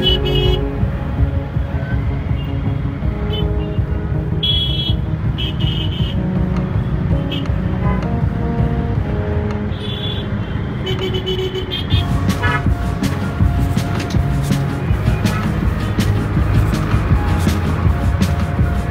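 Motorcycle ride through heavy traffic: steady engine and road rumble with several short vehicle-horn honks, the clearest about four to six seconds in and again around ten seconds. Background music plays along with it.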